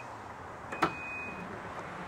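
Ford pickup's power tailgate being released by the key fob: its warning beeper sounds high, steady tones about once a second, with a sharp click from the latch about a second in as the tailgate starts to lower.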